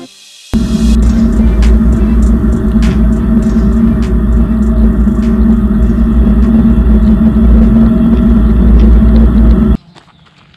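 An off-road vehicle driving along a rough dirt trail, heard through a camera mounted on its hood: a loud, steady low rumble with engine drone and scattered knocks and rattles from the bumps. It starts about half a second in and cuts off suddenly just before the end.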